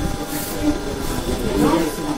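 Voices of several people talking in a room, with a faint steady hum underneath.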